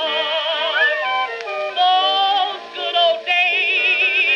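Music from a 1922 Okeh 78 rpm record of a blues number for contralto with orchestra, playing on a turntable. Several held melody notes waver with vibrato, changing every fraction of a second.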